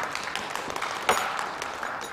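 Studio audience applauding, with a sharp knock about a second in.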